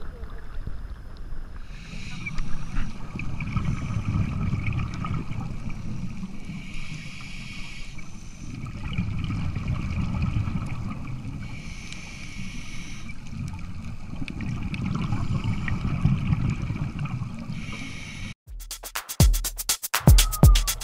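Scuba diving recorded underwater through an action camera's housing: a low rumbling water noise, with a hissing burst of exhaled regulator bubbles about every five seconds. Music cuts back in near the end.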